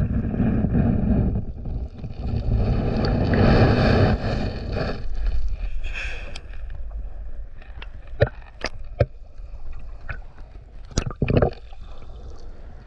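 Muffled water sloshing and gurgling around a camera held underwater, loudest in a rush a few seconds in, then quieter with a few sharp knocks in the second half.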